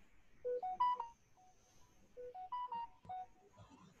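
An electronic notification chime: a short rising three-note jingle, played twice about a second and a half apart.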